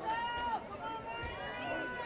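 A voice from the field or stands calling out twice in long, high-pitched shouts, the second longer than the first, over background crowd noise.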